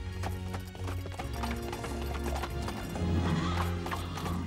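Horses galloping, their hoofbeats clattering in a quick, even rhythm over background music.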